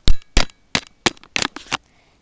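A quick run of sharp clicks and knocks, about eight in two seconds, the first two the loudest: handling noise from fingers fumbling with the camera and its buttons right at the microphone.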